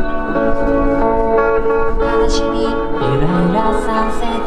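Live rock band music: an amplified electric guitar, a white Gibson Flying V, playing sustained chords with a singing voice over it. A low note slides upward about three seconds in.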